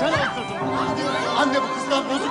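Several voices chattering and calling out over one another, with music sustaining underneath.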